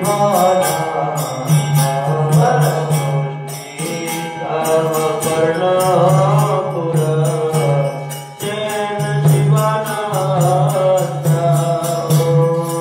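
Devotional mantra chanting (kirtan) sung over a steady low drone, with metallic percussion keeping a fast, even beat.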